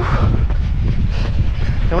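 Strong wind buffeting the camera microphone, a loud, gusty low rumble.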